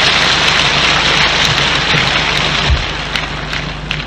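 Audience applause: a dense, even patter of clapping that thins out about three seconds in, over a low electrical hum.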